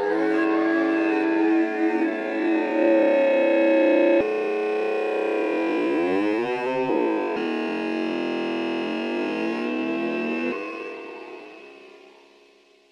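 A strange, voice-like ambient pad sample played through Glitch2's granular Stretcher effect. Its sustained chord tones jump abruptly to new pitches a couple of times and warble up and down in pitch around the middle as the grain settings are changed. The sound fades out near the end.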